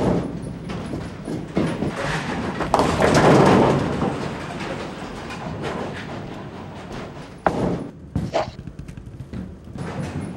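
Bowling alley sounds: a bowling ball rolling down a wooden lane, a loud clatter about three seconds in typical of pins being struck, and a sharp thud about seven and a half seconds in as another ball lands on the lane.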